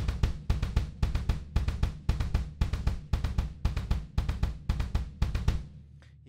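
Double bass drums played with two pedals in a gallop rhythm (one-and-a), the right foot keeping the downbeats and the left filling in. It stops about five and a half seconds in.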